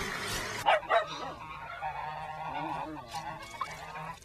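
Farmyard poultry calling: two loud calls close together just before a second in, then quieter, wavering calls.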